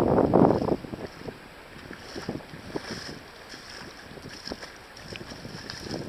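Wind gusting on the microphone, loud for about the first second, then dropping away to a quieter stretch. Under it, small waves lap on the sand with scattered soft splashes.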